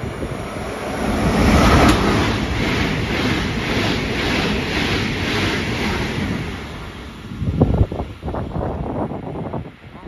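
Deutsche Bahn ICE high-speed train passing through the station at speed without stopping: a loud rushing noise that swells about a second in and holds for several seconds, then a run of uneven knocks near the end as its last wheels clatter over the track.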